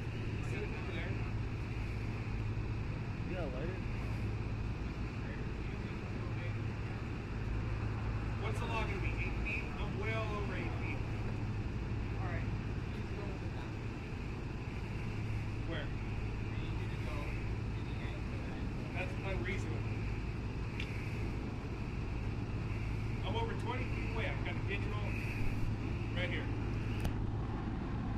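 Steady low hum of idling police vehicle engines, with faint, indistinct voices in the background.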